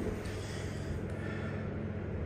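Steady low hum inside a modernised Otis passenger lift car standing at the ground floor with its doors still closed.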